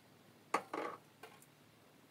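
Hard kitchenware handled: a sharp clack, a short clatter right after, then two light clicks.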